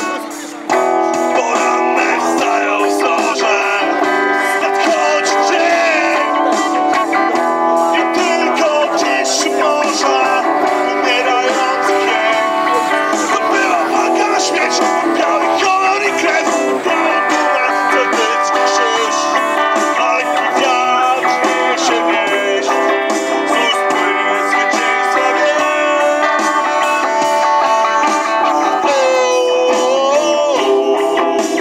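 Electric guitar music played live through PA speakers, with a short drop in level about half a second in.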